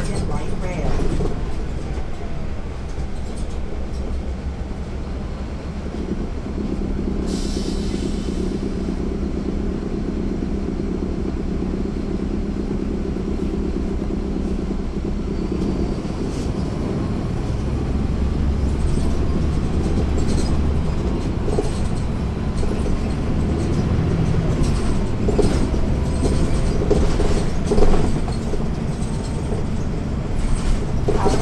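Caterpillar C13 ACERT diesel engine of a 2009 NABI 416.15 (40-SFW) transit bus, heard from the rear seat inside the bus, running under way with its ZF Ecomat automatic transmission; the engine's drone shifts in pitch and strength several times as the bus drives. A brief hiss comes about seven seconds in.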